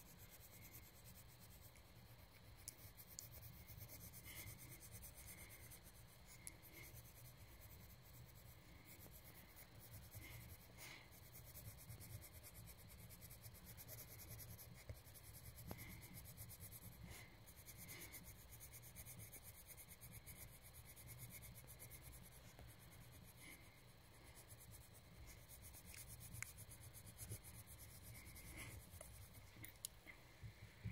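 Faint, continuous scratching of a colouring tool rubbing back and forth on paper as an area of a drawing is coloured in.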